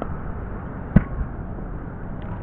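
A pickleball paddle striking the plastic ball: one sharp pop about a second in, followed shortly by a softer knock, over a steady low rumble of wind on the microphone.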